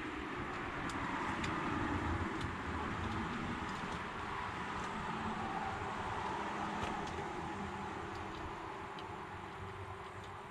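Light clicks and rustling of electrical wires being handled and spade connectors pushed onto rocker switch terminals, a few clicks scattered through, over a steady background hiss.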